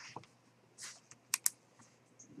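Computer keyboard keys being pressed: a few soft taps, then two sharp key clicks in quick succession a little past halfway.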